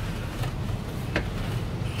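Oak-wood fire burning in a brick kebab oven: a steady low rumble with two sharp crackles, about half a second and a second in.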